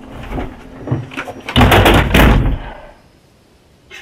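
A low rumbling noise with a few knocks, then a loud burst of harsh noise about a second and a half in that lasts about a second before dying away.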